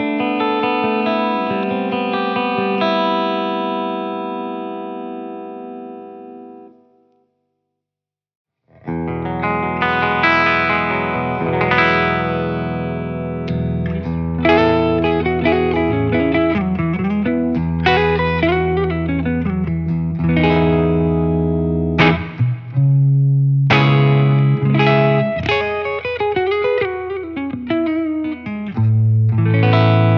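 Clean electric guitar through a Bogner Ecstasy 101B tube amp head, with added studio reverb. A ringing chord fades away over the first several seconds. After about two seconds of silence, a '59 Les Paul replica with A4 pickups starts a clean phrase through a Marshall cabinet with Celestion G12-65 speakers, with some bent notes.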